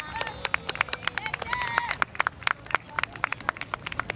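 Scattered hand clapping from an audience at the end of a performance: sharp, irregular claps several a second, with faint voices underneath.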